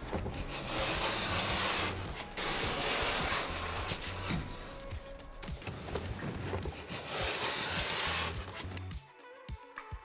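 Hand-held vinyl cutter pushed along the wall, its blade slicing through vinyl sheet flooring in several long scraping strokes, each lasting a second or two, over background music.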